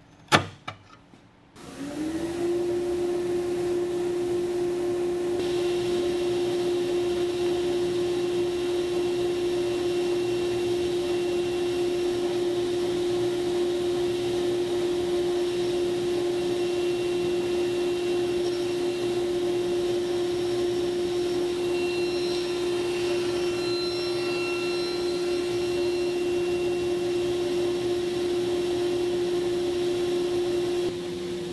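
A few sharp knocks from hand chisel work, then a sliding table saw running. Its motor spins up within about half a second into a loud, steady hum with a whirring rush of air that holds to the end.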